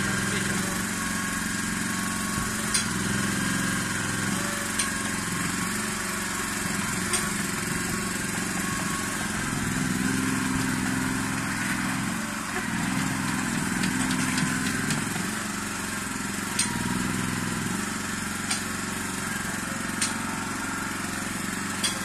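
Komatsu PC01 micro excavator's small engine running steadily while its boom and bucket are worked, the engine note swelling and easing every few seconds under the changing hydraulic load. Short sharp clicks come now and then, about seven in all.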